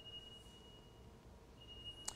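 Near silence: room tone with a faint high-pitched whine that breaks off about midway and returns near the end.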